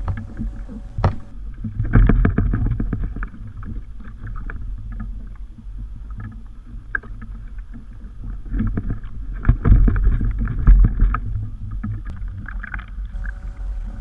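Small choppy waves slapping and splashing against a kayak hull, with wind rumbling on the microphone and scattered knocks. The water noise swells about two seconds in and again for a couple of seconds past the middle.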